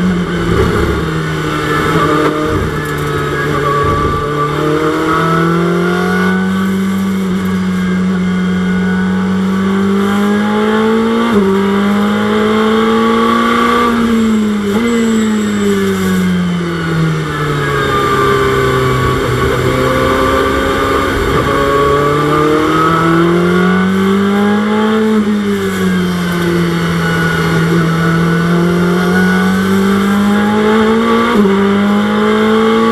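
Ferrari 488 GT3's twin-turbo V8 at racing speed, heard from inside the cockpit. The engine note climbs with quick upshifts, drops away steadily from about halfway through, climbs again, and eases off near the end.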